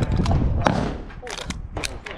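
About five short, sharp knocks spread over two seconds, irregularly spaced, with voices in the background.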